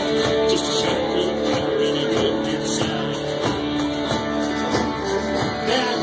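Live country band playing through a bar PA: electric and acoustic guitars over a steady drum beat.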